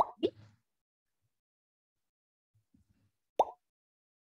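Short digital pop sound effects: two quick pops right at the start and a sharper, louder one about three and a half seconds in. They fit the sound an online quiz lobby plays as players join.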